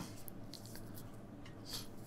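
Quiet room tone with a low steady hum and a few faint, soft rustles, one about half a second in and another just before the end.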